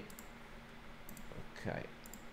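A few faint, separate clicks of someone working a computer.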